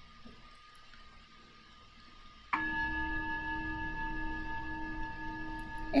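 A cell phone going off with a bell-like ringtone: a steady chiming tone of a few held pitches that starts suddenly about two and a half seconds in and holds level. Before it, only faint room tone.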